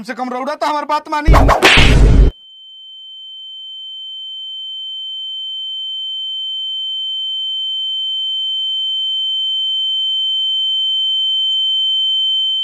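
A steady high-pitched ringing tone, the comedy sound effect for ringing ears after a slap, starts about two seconds in after a loud voice and slowly grows louder.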